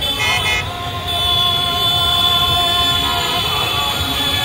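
Scooter and motorcycle engines running at a crawl under a crowd's voices, with horns honking: a short horn blast just after the start and a longer steady horn held for about two seconds in the middle.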